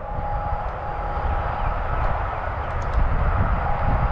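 Wind buffeting the microphone outdoors: a loud, uneven low rumble, with a faint thin steady whine that drops in and out.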